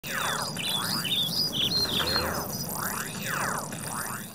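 Birds chirping and calling: quick high chirps mixed with repeated sweeping calls that glide up and down in pitch.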